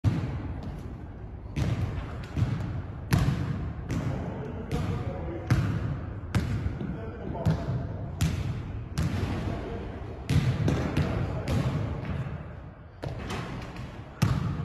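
Basketball dribbled on a hardwood gym floor, bouncing about once every 0.8 seconds, each bounce ringing briefly in the large hall.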